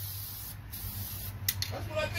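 Aerosol spray-paint can hissing in short bursts with brief pauses between them, as paint is sprayed onto a brake caliper.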